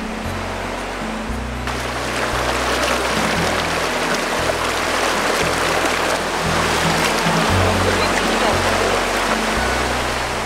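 Rushing water of a rocky mountain stream's rapids, a steady rush that grows fuller about two seconds in, under background music of sustained low notes.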